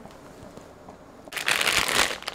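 Plastic bag of frozen green beans crinkling as it is picked up and handled: a sudden loud rustle starting about a second and a half in, after faint background hiss.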